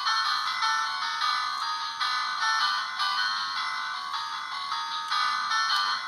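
A thin, high-pitched electronic tune played through a small speaker, with no bass, in a run of short steady notes.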